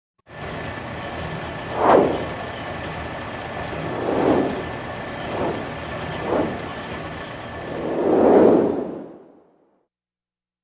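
Logo-animation sound effects: a steady noisy bed with a faint high tone, crossed by five whooshes, the sharpest about two seconds in and the broadest near the end, then fading away before the end.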